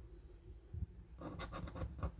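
A coin scratching the coating off a paper scratchcard in short, faint strokes, starting a little over a second in after a quiet moment.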